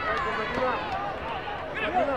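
Several voices calling and shouting over one another, coaches and spectators at a taekwondo bout.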